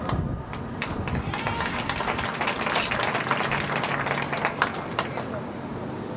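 Scattered applause from a stadium crowd: a patter of many claps that dies away about five seconds in.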